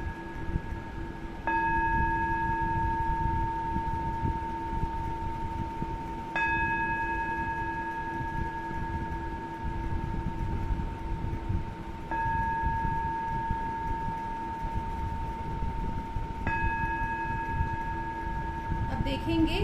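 Singing bowl tones, struck four times about every five seconds, each strike ringing on steadily with a low hum and several higher overtones until the next, over a low background rumble.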